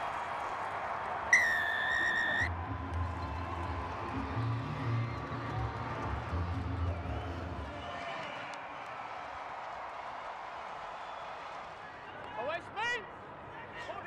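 Stadium crowd noise with a referee's whistle blowing one steady blast of about a second, signalling the try just scored in the corner. A short music sting with a deep pulsing bass follows, then the crowd noise carries on under a brief voice near the end.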